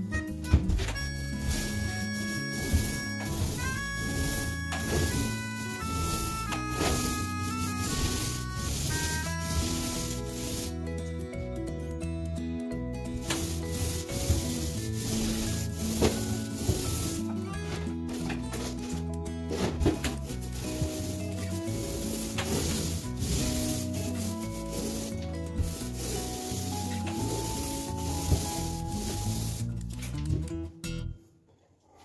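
Paint roller on an extension pole rolling over a wall, a repeated rubbing, heard under background music with a steady melody and bass.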